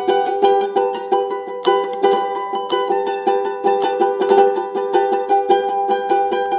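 A ukulele being strummed in a quick, even rhythm, chords struck several times a second and ringing on between strokes.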